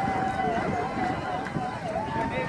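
A voice holding long notes that waver and dip in pitch, as in singing or a drawn-out cheer, over outdoor background noise.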